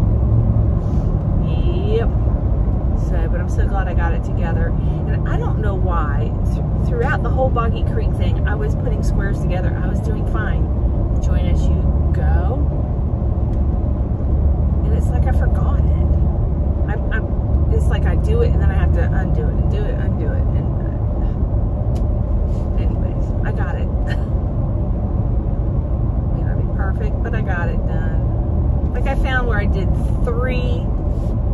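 Steady low road and engine rumble inside the cabin of a moving SUV, with a woman talking over it throughout.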